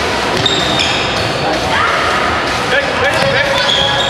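Indoor-football shoes squeaking in short, sometimes rising chirps on a sports-hall floor, with the ball being kicked and bouncing. All of it sits in the echoing din of a large gym, with voices calling.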